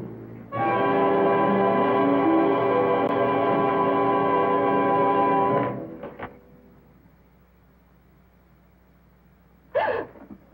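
Orchestral film score: a sustained chord of many instruments held for about five seconds, then cut off suddenly, leaving a few seconds of faint soundtrack hiss.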